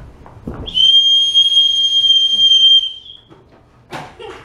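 Dog training whistle blown in one long, steady, high blast of about two and a half seconds, used as the recall signal to call the dogs. A soft knock comes just before it.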